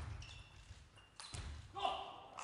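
Table tennis rally: the celluloid ball knocking sharply off bats and table, a few separate strikes.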